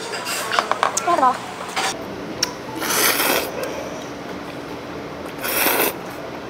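Metal spoon and chopsticks clicking against a stainless steel bowl in the first second or so, then cold noodles being slurped, loudest just before the end.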